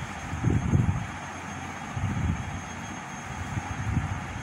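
A steady low rumble of background noise, with a few irregular soft low thumps about half a second and two seconds in.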